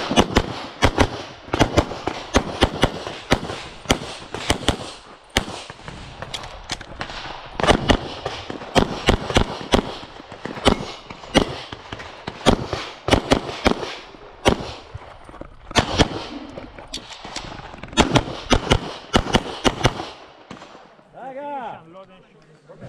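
Semi-automatic pistol firing a long rapid string of shots, many in quick pairs, with brief gaps between groups as the shooter moves between targets. The shooting stops about 20 seconds in.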